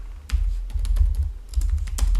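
Computer keyboard being typed on: a quick run of about a dozen keystroke clicks, with a heavy low thump under them.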